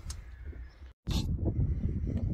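Wind rumbling on a phone microphone, with a moment of dead silence about a second in where two clips are joined. The rumble is louder after the join.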